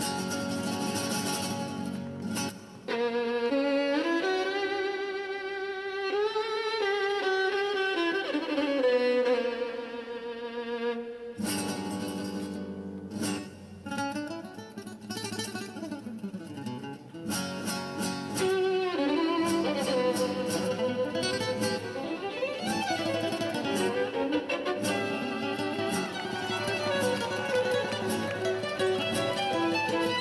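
Violin music with string accompaniment, starting suddenly: a long singing violin melody with slides between notes, then a more agitated passage with sharp plucked and struck notes from about twelve seconds in.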